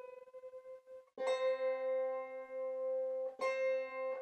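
Wire-strung early Irish harp, a David Kortier copy of the Downhill harp, being tuned by octaves: a plucked upper C rings with a long, bright sustain and is stopped about a second in. Then the upper and lower C strings are sounded together as an octave and ring on, and the upper string is plucked again near the end while its pitch is checked against the lower one.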